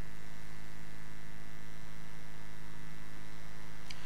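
Steady electrical mains hum from the microphone and sound system, a set of fixed tones that never changes.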